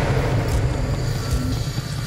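Horror-trailer sound design: a low, steady rumble with a hissing, flame-like haze that slowly thins, under a faint musical drone.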